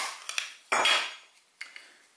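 Hard plastic pocket-hole jig parts being handled: a sharp click at the start, a few small knocks, and a louder clatter a little under a second in, as the stop block comes off the Kreg K5 jig and the Kreg HD jig is lifted.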